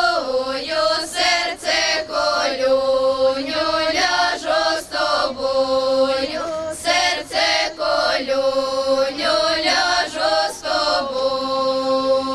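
Female folk ensemble singing a Ukrainian folk song unaccompanied, in long held phrases, with a long held note near the end.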